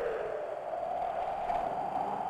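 A steady airy whoosh from the title sequence's sound design, drifting slightly upward in pitch.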